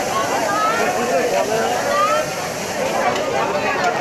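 Market chatter: people talking at once, voices overlapping at a steady level, with no single clear speaker.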